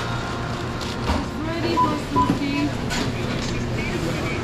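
Fast-food counter ambience: indistinct staff voices in the background over a steady low hum of kitchen equipment.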